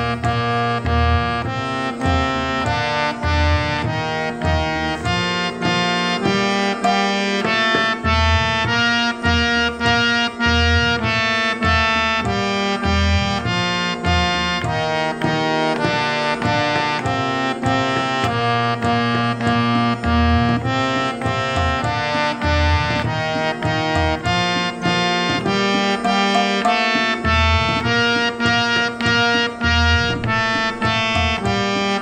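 Harmonium accompaniment for Hindustani singing practice, playing the alankar of doubled notes (sa sa, re re, ga ga…) up and down the scale in A#, the notes changing about twice a second over a held drone on Sa. A steady tabla beat runs underneath, and there is no voice.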